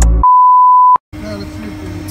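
A loud, steady, high-pitched electronic beep held for under a second, cutting straight in over the end of a music track and stopping abruptly. After a brief silence, an ambient bed with a steady low hum starts.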